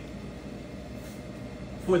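Steady low background hum of a lecture room, with a man's voice starting right at the end.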